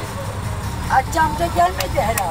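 Low, steady rumble of a car driving slowly along a street, with a person's voice calling out from about a second in.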